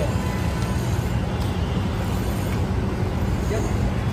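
Steady low rumble of street traffic, with a faint voice briefly near the end.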